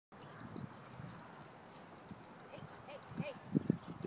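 Faint hoofbeats of a horse moving over dry, grassy ground, with a few louder thuds near the end.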